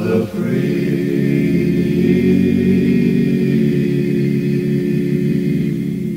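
A cappella gospel quartet singing in four-part harmony: a short rising phrase, a brief break, then one long held closing chord.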